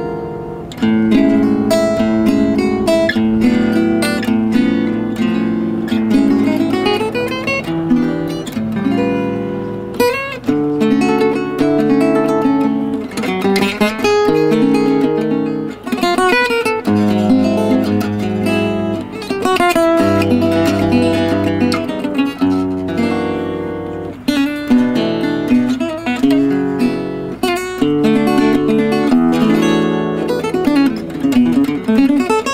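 Solo gypsy jazz guitar: a Selmer-Maccaferri-style oval-hole acoustic guitar played with a pick, mixing fast single-note runs with chords and bass notes.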